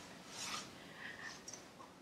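Faint rustling and rubbing of bodies and clothing sliding on yoga mats as legs are swung around, in two soft swells.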